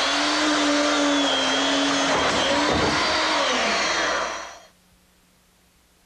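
Hand-held power tool's motor running at a steady high speed while carving a turkey. It dips briefly in pitch about three seconds in, then winds down and stops a little over four seconds in.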